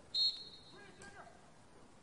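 Referee's whistle, one short steady blast just after the start, signalling that the free kick may be taken, followed by faint players' voices.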